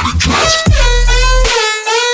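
Electronic dance music with a synth lead over heavy bass. The bass drops out briefly a little past halfway through.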